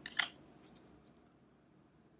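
Trading cards sliding against each other as one is pulled off a stack and moved to the back: a short swish right at the start, a faint flick a moment later, then quiet room tone.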